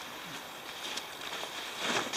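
Rab Borealis shell jacket's fabric rustling as it is unfolded and handled, swelling a little near the end, over a steady faint outdoor hiss.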